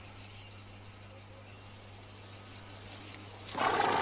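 Faint steady chirring of crickets over a low hum. About three and a half seconds in, a louder swell of rushing noise rises.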